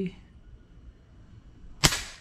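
A Custom G3 PCP air rifle in .22 (5.5 mm) firing one shot near the end: a single sharp crack with a short ring-out.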